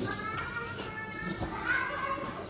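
Faint voices talking in the background, with no close-up speech.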